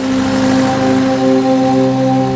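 Minibus driving along a road, a steady rushing noise, with a held musical drone sounding underneath.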